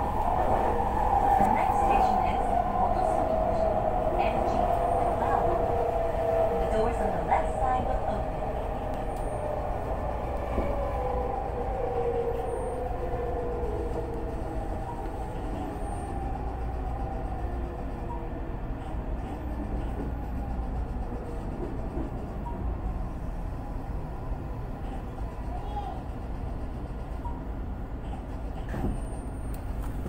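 Toei Mita Line 6500-series electric train braking toward a stop: the traction motor whine falls steadily in pitch and fades as the train slows, over a steady rumble of wheels on rail, heard from inside the rear cab.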